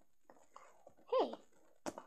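A short, squeaky voice sound that rises and falls back in pitch about a second in, then a sharp tap near the end as a small plastic toy figure is set down on the table.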